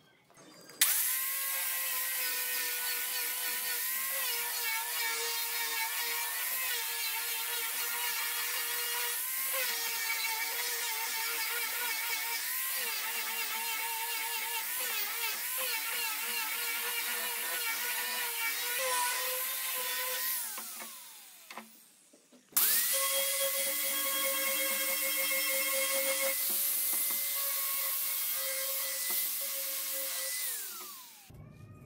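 Angle grinder with a sanding disc running, its whine wavering and dipping as it is pressed against a laminated wooden ring to sand it. It winds down about twenty seconds in, starts up again a couple of seconds later, and winds down again near the end.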